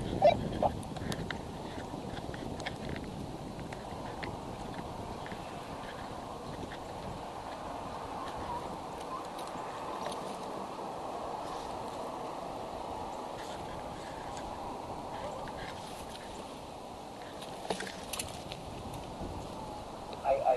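Steady rushing background noise, with scattered small clicks and knocks as the nest camera is handled and re-aimed by hand. A few louder knocks come near the end.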